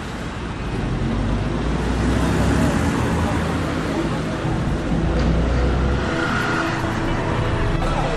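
A vehicle engine rumbling steadily and road traffic noise, with indistinct voices of people talking nearby.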